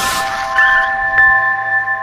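Intro music sting: several steady, ringing chime-like tones sustained together, with a brief rushing noise at the start and a faint tick just past a second in.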